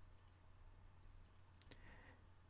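Near silence with a faint computer mouse click, pressed and released, about one and a half seconds in.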